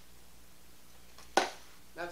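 Quiet room tone, then a single sharp knock about one and a half seconds in as a Pringles can is set down on a granite countertop.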